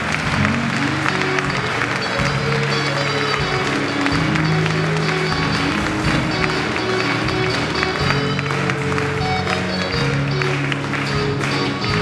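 A live pop-rock band playing: drums with cymbals, electric guitar, bass guitar, keyboard, acoustic guitar and cello. The bass holds each note for about two seconds before moving to the next.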